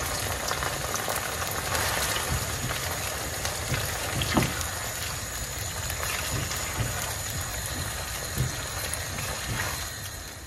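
Tomato and onion sauce sizzling and bubbling in oil in a frying pan as a silicone spatula stirs it, with a few soft taps of the spatula.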